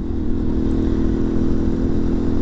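Mondial RX3i Evo's single-cylinder engine running steadily under way at about 65 km/h, heard from the rider's seat. The tank is nearly dry; the engine has begun to misfire from fuel starvation.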